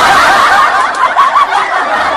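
Loud laughter.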